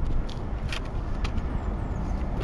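Wind buffeting the camera microphone outdoors, a steady low rumble, with a few light clicks from the camera or sign being handled.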